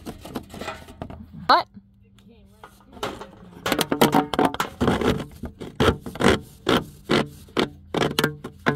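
A corrugated plastic drain hose rubbing and scraping against the wood of a floor hole as it is pushed through, in a run of short strokes about twice a second in the second half.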